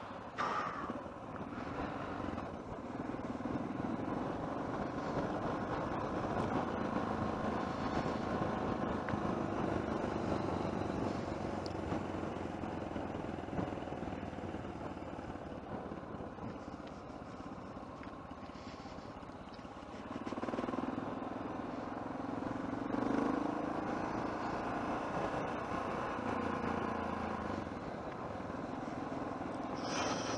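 Motorcycle engine running under way, with wind and road noise; the engine note shifts with the throttle and gets louder about twenty seconds in.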